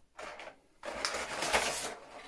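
Clear plastic packaging being handled and pressed into place by hand: a brief rustle, a short pause, then about a second of steady plastic rubbing and scraping.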